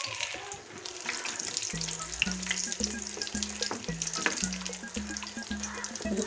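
Chicken Maggi noodle cutlets shallow-frying in hot oil, a steady sizzle with dense crackling. Low background music with a repeating bass line comes in about two seconds in.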